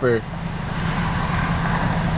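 Car engine idling at a standstill, a steady low hum under a bed of outdoor noise.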